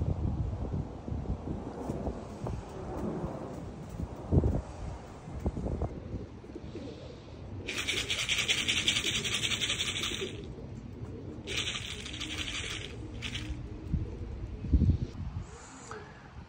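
Young racing pigeons in a loft aviary, with faint bird sounds over a low rumble of wind on the microphone and a few soft thumps; two hissing bursts of a few seconds each come in the middle.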